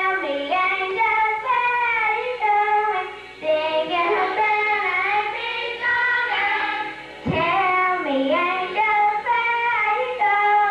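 Group of children singing a song together, with some older voices among them, the tune carried in sung phrases with short breaks for breath about three seconds and seven seconds in.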